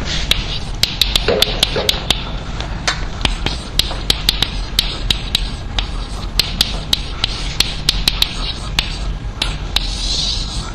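Chalk writing on a blackboard: an irregular run of sharp taps and short scratches, several a second, as letters are written. A steady low room hum runs underneath.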